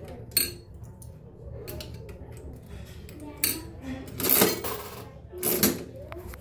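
Vintage 50-cent mechanical slot machine played by its lever: metal clicking and clatter as the reels spin. Three louder clunks come about three and a half, four and a half and five and a half seconds in as the reels stop one after another.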